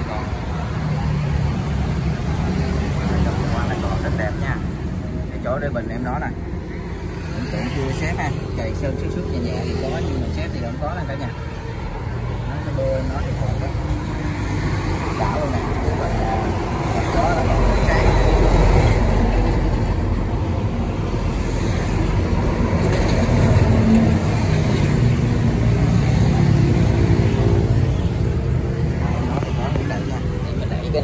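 Kubota L1-33 tractor's diesel engine running at a steady idle, a low, even drone that swells louder twice in the second half.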